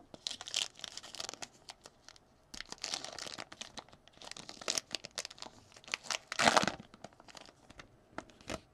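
Foil wrapper of a Topps Chrome Sapphire baseball card pack being torn open and crinkled by hand, in several bursts of rustling, the loudest about six and a half seconds in.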